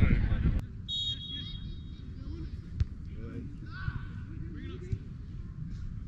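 Low wind rumble on the microphone that cuts off suddenly about half a second in, leaving the open sound of a football pitch: distant shouts of players, a thin high whistle about a second in, and a few sharp thuds of the ball being kicked.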